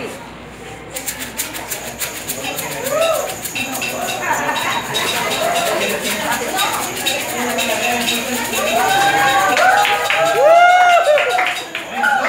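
Homemade rain stick made from recycled material, a decorated tube tilted back and forth so its filling trickles through with a continuous fine rattling patter that starts about a second in and grows a little louder toward the end.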